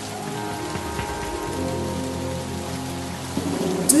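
Steady rain falling, with low, long-held music notes underneath.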